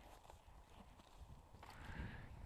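Faint rustling and crunching of litter and dry grass as a large fabric sack is dragged out of a rubbish pile, with irregular footstep-like knocks and a louder crackle near the end.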